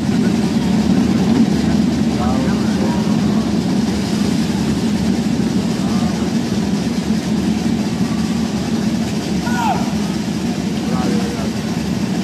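A steady, unbroken drum roll from parade drums accompanying a flag-throwing routine.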